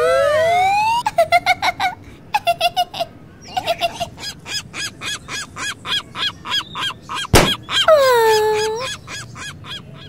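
Cartoon sound effects: a rising glide, then a cartoon bird's rapid, repeated honking chirps. About seven seconds in, a single sharp pop as the balloon bursts, followed by a falling tone that levels off.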